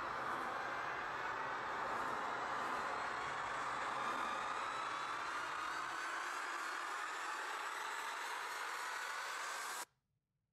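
Rushing, hiss-like intro sound effect with faint tones slowly rising in pitch, thinning in the bass about six seconds in and cut off abruptly just before the end.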